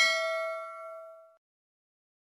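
Notification-bell sound effect: a single bright ding that rings out and fades away over about a second and a half.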